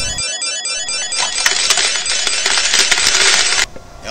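Cartoon slot-machine jackpot sound effect: a fast run of repeating ringing tones, then a shower of coins jingling out for about two and a half seconds, cutting off suddenly near the end.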